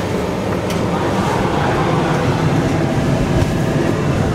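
The Polar Bear Express passenger train running, heard from inside the coach: a steady rumble of wheels on the rails, with a faint click less than a second in.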